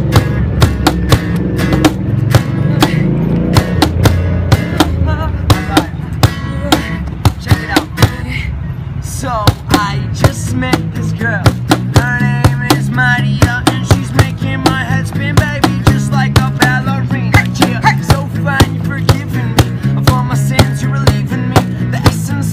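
A small acoustic band playing live: acoustic guitar, a bass guitar through a small amp, and a Meinl cajón keeping a steady beat. Voices singing join about ten seconds in.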